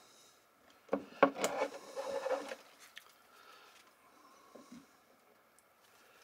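Small handling noises of wiring work: a few sharp clicks and rustling from about a second in to two and a half seconds, as a wire and an insulated crimp terminal are worked by hand and crimping pliers are taken up from a wooden table, then faint scattered taps.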